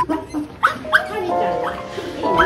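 A small dog giving two short, sharp barks about a third of a second apart, over background music.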